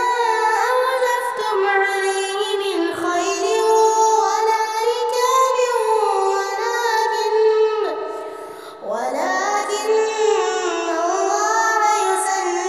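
Background song: a high voice singing a melody, with the sound dipping briefly about eight and a half seconds in before the singing resumes.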